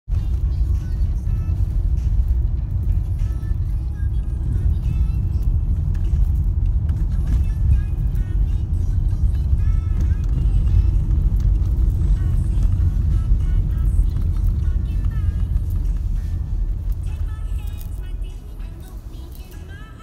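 Car cabin road noise while driving on cobbled streets, a steady low rumble that eases off near the end as the car slows, with music playing over it.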